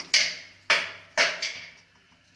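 A spoon tapping three times on the rim of a pressure cooker, about half a second apart, each tap ringing out briefly.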